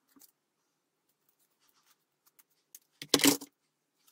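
A few faint clicks of scissors and card being handled, then about three seconds in a short, loud clatter as a pair of scissors is set down on the work table.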